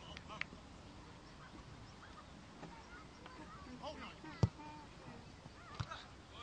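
A football struck hard once for a corner kick, a sharp thump a little past halfway, with a second, softer thump near the end. Players' short shouts sound around it.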